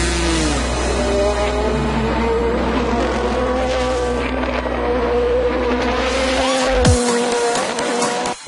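Race car engines at speed on the circuit, their pitch wavering as cars go past, with background music underneath.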